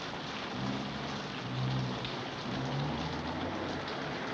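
Steady rain falling, with a low rumble of thunder through the middle.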